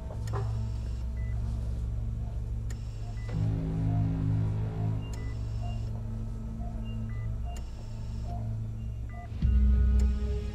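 Dark, low drone of a dramatic score under the regular beeping of a hospital patient monitor, short beeps about once a second. A deep low hit comes near the end.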